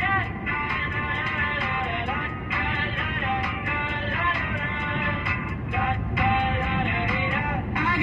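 A pop song with a singing voice playing over the car radio inside the cabin, with steady road and engine noise from the moving car underneath.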